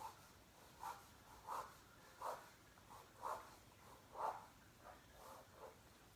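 Faint strokes of a pen or marker on paper, coming in a run of short scratches about half a second to a second apart.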